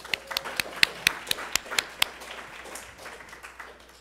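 Audience applauding, with sharp, distinct claps close by in the first two seconds, thinning and dying away near the end.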